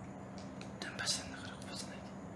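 Cat crunching dry kibble taken from a hand: two short crunching bursts, the louder about a second in and another near the end.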